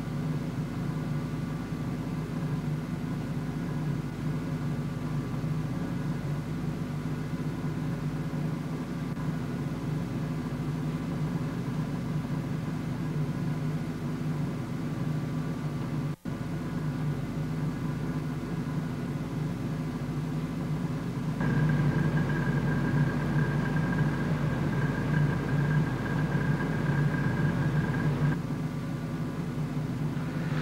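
A steady low hum made of several held tones. It cuts out for a moment about sixteen seconds in, and is louder for several seconds near the end.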